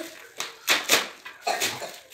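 Plastic mailer bag and wrapping crinkling and rustling in several short bursts as a wrapped box is pulled out of it.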